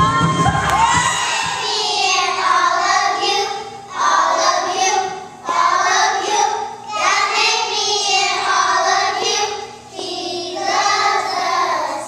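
A group of young children singing together into microphones, in short phrases with brief pauses between them. Recorded music with a heavy bass cuts off about a second in.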